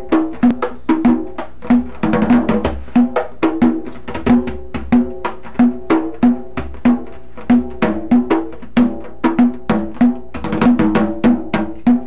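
Hide-headed tambor alegre played with bare hands: a steady pattern of sharp, ringing strokes about three a second, with quicker flurries of strokes a couple of seconds in and again near the end.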